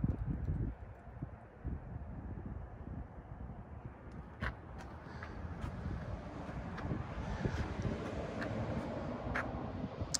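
Wind rumbling on the microphone over outdoor background noise, with a few faint clicks about halfway through and near the end.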